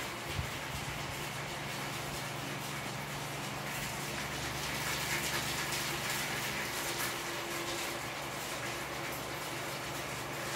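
A cocktail shaker being shaken hard, a little away from the microphone, with a rattle that grows brighter and busier in the middle few seconds over a steady background hum.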